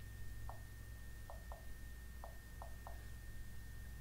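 Typing on a Microsoft Surface RT's on-screen touch keyboard: six faint, short key taps spread unevenly over about two and a half seconds, over a low steady hum.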